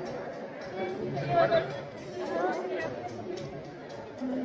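Indistinct background chatter of several people talking, with a voice rising a little louder about a second and a half in.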